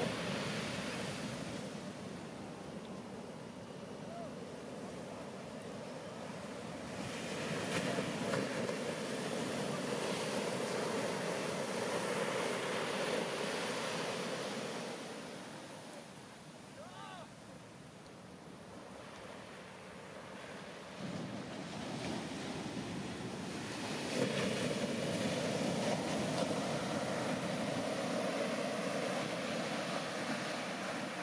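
Ocean waves breaking in a steep shore break and washing up the sand, a continuous surf roar. It builds and fades as waves break, quietest around the middle and loudest near the end.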